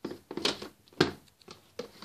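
Handling noise: a few short knocks and rustles as objects on a shelf and the phone are handled, the sharpest knock about a second in.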